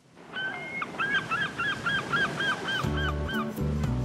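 A gull calling: a rapid run of about a dozen short notes, about five a second, over a steady hiss of sea. Music comes in near the end.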